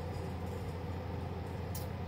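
A steady low hum with a light background hiss, and one brief sharp tick near the end.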